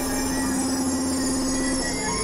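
Dense layered experimental drone and noise music: several sustained tones held at once, with shrill high tones over a noisy low rumble, giving a screeching, wheel-squeal-like texture. A strong low tone holds steady and drops out near the end.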